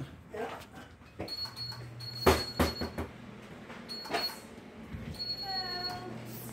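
A diner's entrance door clunking as it is pushed open and swung, one sharp knock the loudest, followed by a few lighter knocks, over a steady low hum and a faint high whine that comes and goes.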